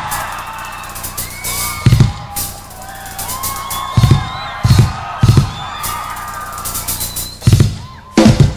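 Live rock drum kit solo: heavy, spaced-out strokes on the bass drum and toms with cymbal crashes, three of them coming close together in the middle, over faint gliding whoops and whistles from the audience.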